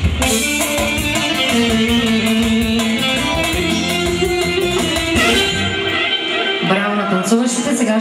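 Loud dance music with a beat, bass and an electric lead instrument, playing for the dancers; the beat and bass cut out about six seconds in, and a voice begins shortly after.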